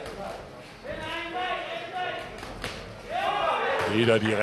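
Men's raised voices calling out in a large hall, with a few sharp knocks in between. A voice grows loud near the end.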